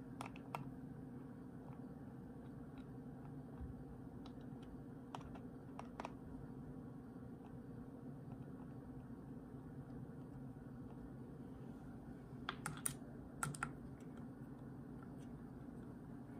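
Sparse, faint metal clicks and taps from a hand screwdriver with a T25 Torx socket bit driving screws into a DCT470 transmission's mechatronic unit. A short cluster of clicks comes about three-quarters of the way through, over a faint steady hum.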